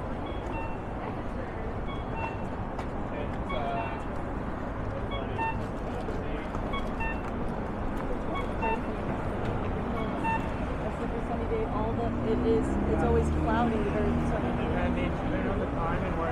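Accessible pedestrian crossing signal beeping about once a second, the locator tone of a corner push-button, over steady city traffic. People are talking nearby, louder in the second half.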